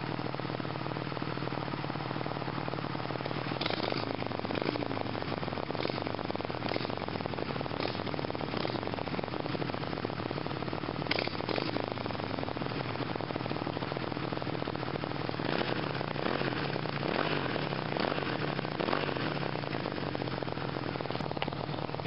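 V-twin motorcycle engine idling steadily, with a couple of brief knocks along the way.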